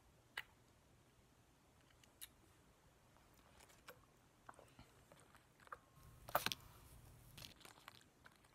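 Quiet mouth sounds of a person chewing sour candy: scattered sharp clicks and crunches, with the loudest cluster about six seconds in.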